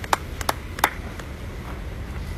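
Scattered handclaps from a small audience: applause dying away to three sharp claps in the first second, then stopping, with a low wind rumble on the microphone.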